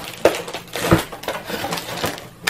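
Hands handling a craft kit's plastic packaging, with rustling and two knocks of things set down on a table, the first about a quarter second in and the second near the one-second mark.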